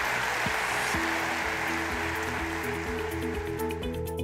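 Audience applause that fades away over the first few seconds, while music with steady held notes comes in about a second in.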